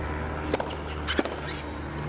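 Two sharp strikes of a tennis racket on the ball, a little over half a second apart, as a serve is hit and returned, over a steady low music bed.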